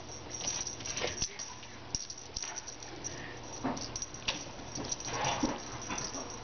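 Kittens playing with a feather wand toy: scattered light rustles and taps from the toy and their paws on carpet, with a few brief, faint animal sounds.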